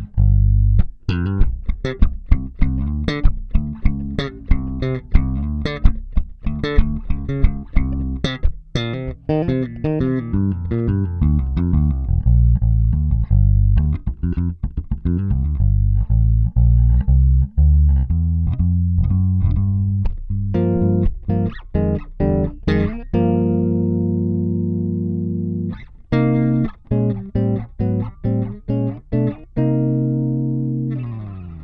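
Kiesel LB76 electric bass played through an Aguilar AG 700 head set with bass and treble boosted and low mids cut, giving a clean tone. A quick run of plucked notes, then a few notes left ringing for several seconds past the two-thirds mark, then more plucked notes ending on a ringing note.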